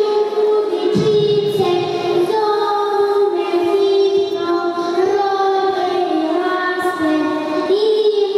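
Young girls singing a song together into a handheld microphone, holding long notes that step up and down in pitch.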